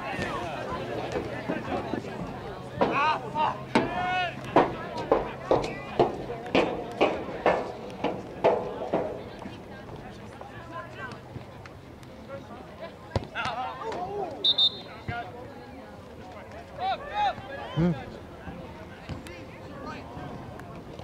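Shouting voices at a soccer game: a run of quick repeated calls, about two a second, for several seconds, then quieter stretches with scattered sharp knocks and a few more shouts near the end.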